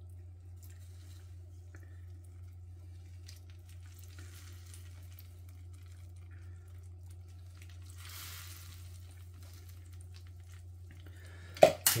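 Faint trickling and splashing of stock poured from a plastic measuring jug into a glass baking dish of chicken thighs, over a steady low hum, with a brief louder hiss of liquid about eight seconds in. A sharp knock comes near the end.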